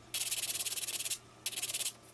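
Emery board rubbed quickly back and forth over a dried, oven-baked paper clay piece (insulation and flour clay), showing the hardened clay sands. Rapid short strokes come in two runs, with a brief pause just past the middle.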